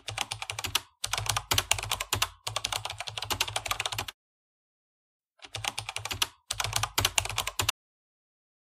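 Fast runs of clicking in five bursts, each about a second long, with a low hum beneath; each burst starts and stops abruptly with dead silence between.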